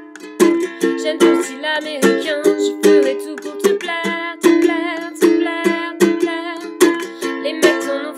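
Ukulele strummed in a steady rhythm, two to three strokes a second, with a woman singing over it from about a second and a half in.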